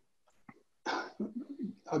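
A faint click about half a second in, then a short vocal sound from a person, heard as a cough or throat-clearing, lasting about a second and running straight into speech near the end.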